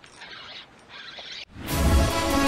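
Fishing reel being cranked, a faint scratchy winding in short bursts; about one and a half seconds in, loud background music starts suddenly.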